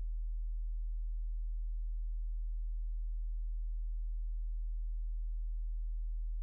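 A steady low hum: a single deep tone that does not change, with nothing else heard.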